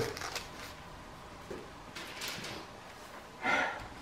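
Quiet rustling of Bible pages being turned by hand: a few short papery swishes, the loudest shortly before the end.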